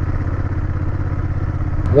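Honda Rebel 1100's parallel-twin engine running steadily at cruising speed, heard from the moving motorcycle.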